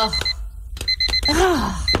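Electronic alarm clock beeping in quick runs of about four beeps, repeating roughly once a second, as a wake-up alarm. A person's voice gives a drowsy 'uh' and a sliding groan between the beeps.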